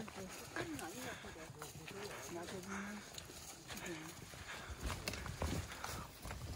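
Footsteps shuffling and crunching through dry fallen leaves on a forest trail, with light taps of trekking poles, and a few heavier low thumps about five seconds in.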